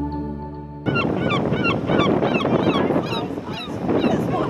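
Guitar music fades out, and a little under a second in it cuts to herring gulls calling: many short, overlapping calls in quick succession over a background hiss.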